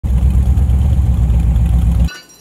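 Chevy 383 stroker V8 with open headers in a Model T bucket hot rod, running steadily and loud as the car drives along, heard from the driver's seat.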